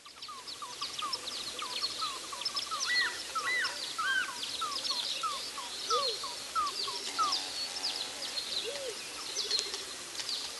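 Several birds calling and singing at once, fading in over the first second. One bird repeats a short slurred note several times a second amid higher chirps and occasional lower calls.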